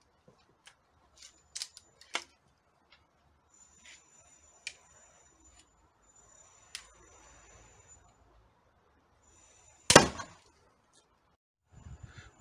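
A pistol crossbow shot about ten seconds in: one loud, sharp crack as the string releases and the bolt strikes the LCD TV. A few faint clicks come before it.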